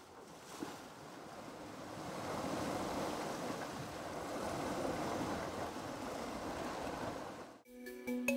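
Choppy open sea: a steady rushing wash of waves with wind, fading in over the first couple of seconds and cutting off abruptly shortly before the end.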